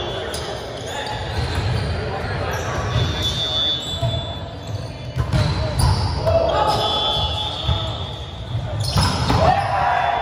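Indoor volleyball rally in a large, echoing gymnasium: the ball being hit, sneakers squeaking briefly on the hardwood floor, and players' voices and calls, with the loudest shout near the end.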